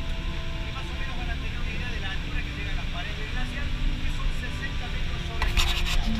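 Coach bus cabin noise while driving at highway speed: a steady low rumble of engine and tyres with a faint hum, heard from inside at the front of the bus.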